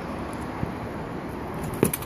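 Steady rushing wind noise on the microphone, then a sharp knock near the end as the rider steps down off an Airwheel X6 electric unicycle onto the asphalt.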